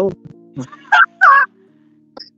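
A person laughing: two short, high-pitched, cackling bursts about a second in, over a faint steady background hum of music.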